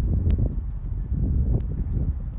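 Wind buffeting the microphone: a loud, gusting low rumble, with a single thin click about a third of a second in.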